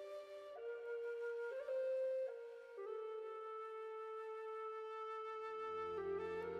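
Slow flute melody of a few long held notes, the last one held for about three seconds, with a low drone joining near the end.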